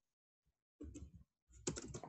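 Faint keystrokes on a computer keyboard: a few taps about a second in and more near the end.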